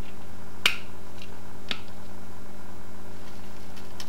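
A plastic parmesan cheese shaker being shaken over a pan of popcorn, giving a few sharp clicks in the first two seconds, over a steady low electrical hum.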